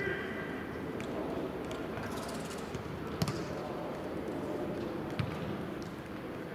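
A football kicked twice: sharp thuds a little past halfway and again near the end, the first the louder, over an indistinct murmur of voices on the training ground.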